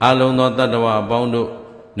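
Buddhist monk chanting Pali verses: one long, fairly level-pitched phrase from a man's voice that tails off near the end.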